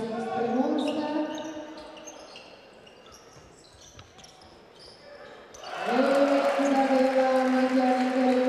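Basketball game in a sports hall: sneakers squeak on the court while fans' voices call out in long, sustained chants. The chanting dies away a couple of seconds in and comes back loud and sudden about six seconds in, greeting a made three-pointer.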